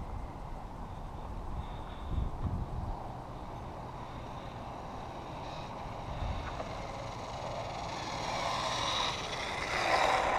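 Wind rumbling on a body-worn action camera's microphone, with irregular low swells, while the wearer walks along an asphalt road. A brighter hiss builds over the last couple of seconds.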